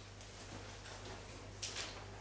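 Quiet room tone with a steady low hum, and one faint short rustle or movement sound near the end.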